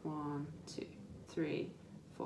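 A woman's voice speaking softly, almost whispering, in short separate syllables, like counting under her breath.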